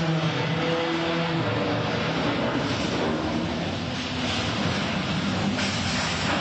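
Loud, harsh scraping and grinding as one cruise ship's hull and balconies rub along another's, picked up by a phone microphone. Wavering low droning tones sound through the first second and a half, and the noise grows harsher in stretches later on.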